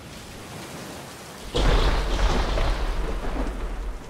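A faint hiss, then about a second and a half in a sudden loud, deep rumble with a dense rushing noise over it, like a thunderclap in heavy rain: a thunderstorm sound effect.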